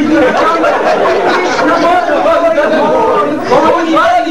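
Indistinct speech: several voices talking over one another, with no single clear line.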